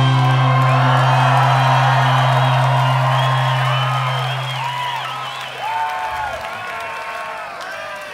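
A rock band's last note ringing on from the final chord and fading out about six seconds in, while the crowd cheers and whoops.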